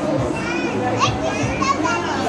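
Busy restaurant hubbub: many voices at once, a young child's high voice rising sharply about a second in.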